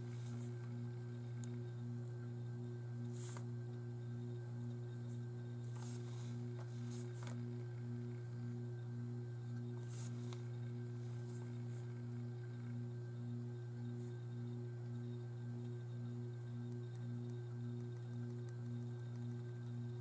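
Steady low electrical hum with a weaker higher tone pulsing about twice a second, and a few faint taps along the way.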